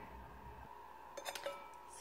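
A metal spoon clinking lightly against a ceramic bowl a few times just past a second in, with a brief ring after. Otherwise quiet room tone with a faint steady hum.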